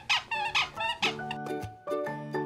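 A plush squeaky toy squeaking about three times in quick succession as a miniature schnauzer chews it. About a second in, music with steady held chords begins.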